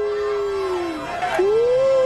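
Long howls: one held call on a steady pitch that ends about halfway through, then a second that rises slightly and carries on past the end.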